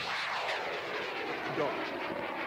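Arguna 2 amateur rocket's motor at lift-off: a loud rushing roar that starts suddenly just before and holds through, with a sweep falling in pitch as the rocket climbs away.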